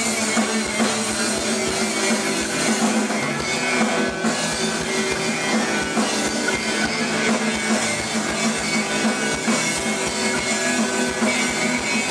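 Live band playing: a strummed acoustic guitar over a Tama drum kit, with a steady kick-drum beat.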